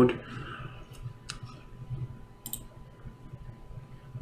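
Computer mouse clicking: three sharp clicks, two close together about a second in and one more about two and a half seconds in.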